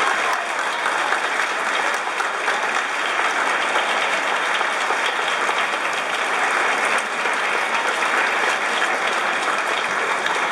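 Audience applauding steadily in a hall, a dense wash of many hands clapping without a break.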